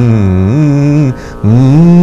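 A man singing a slow raga phrase on the Kalyani scale (Yaman in Hindustani music), holding long notes that glide and bend between pitches, with a short breath about a second in before the next phrase begins.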